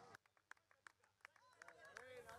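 Near silence: faint outdoor street ambience with scattered soft taps at irregular intervals and faint voices in the second half.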